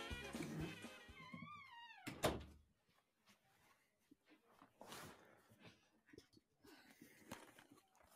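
Background music with a drum beat fading out over the first two seconds, ending in bending, gliding tones and a single thump. After that, near silence with only faint scattered clicks.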